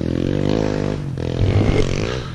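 Kawasaki KLX 140L's single-cylinder four-stroke engine, fitted with an aftermarket exhaust pipe, dropping in pitch as it slows during the first second, then revving back up about a second and a half in, with a few low knocks.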